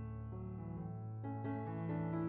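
Soft instrumental background music led by piano, notes changing about every half second.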